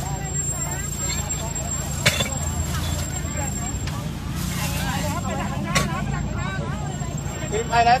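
Vehicle engine running with a low, steady hum, heard from inside the cab, under the chatter of a crowd walking alongside. A sharp click stands out about two seconds in, and another about six seconds in.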